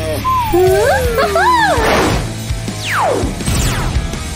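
Cartoon soundtrack: background music with a string of bending, crossing gliding tones in the first half, a short burst of noise about two seconds in, and a fast downward glide about three seconds in.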